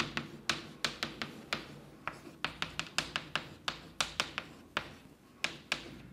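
Chalk tapping and clicking against a blackboard while symbols are written: a quick, irregular run of sharp taps, several a second.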